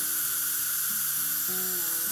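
Background music with a few steady low notes over an even high hiss.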